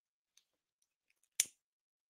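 A single short, sharp click about one and a half seconds in, with a few very faint ticks, otherwise near silence.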